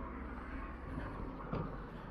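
Steady low outdoor background noise with no clear single source, and a faint short knock about one and a half seconds in.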